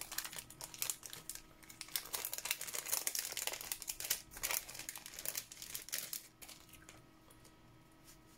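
A clear plastic packet crinkling and crackling in irregular bursts as it is opened and handled by hand, dying down near the end.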